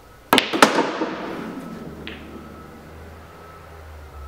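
A pool shot: the cue tip strikes the cue ball about a third of a second in, then a sharp click of ball hitting ball, followed by balls clattering and rolling on the table and dying away, with one more light click about two seconds in.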